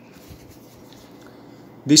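Faint rubbing and light ticks of hands turning over the plastic ear cups of a pair of Sony WH-1000XM3 over-ear headphones. A man's voice begins near the end.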